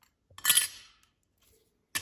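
A hard clink about half a second in, ringing out briefly, as Motorola KRZR flip phones and their battery covers are handled and knocked together or set on the table; a second click comes near the end.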